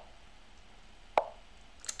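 Lichess move sound: a single short wooden-sounding click about a second in, as a pawn move is played on the online board.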